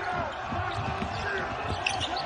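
A basketball being dribbled on a hardwood court, with sneakers squeaking on the floor as players run.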